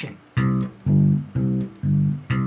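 Electric bass guitar playing a simple root-and-fifth line, a C going down to the G below it. The plucked notes come evenly, about two a second, starting about a third of a second in.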